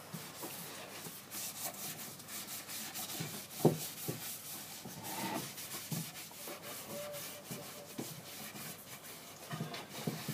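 A rag wiping and rubbing back and forth over charred, carved wooden panels, applying mineral spirits, with small clicks and a single sharp knock about three and a half seconds in.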